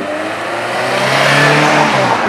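A car engine revving and accelerating, with a rush of road noise that grows louder through the middle.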